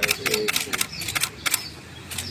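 Camera shutters clicking in a rapid, irregular run, several shots in quick succession, as photographs are taken.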